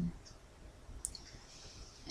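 A single light, sharp click about halfway through, over quiet room tone, followed by a faint hiss.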